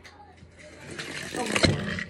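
Rustling and crinkling with a few knocks close to the microphone, starting about a second in and growing louder: snack bags and other things being handled next to the phone.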